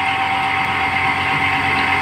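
A steady machine hum with a constant whine in it, like an engine or motor running, holding level throughout with no distinct tool strikes.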